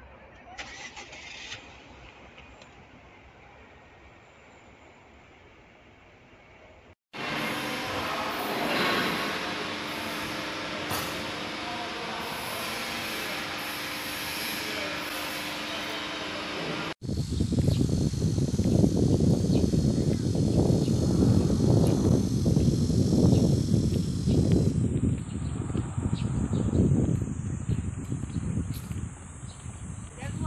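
A faint hiss, then, after a cut about seven seconds in, steady machinery hum with a few held tones from hydraulic shearing machines and press brakes in a sheet-metal workshop. About ten seconds later another cut brings a loud, uneven low rumble that lasts to the end.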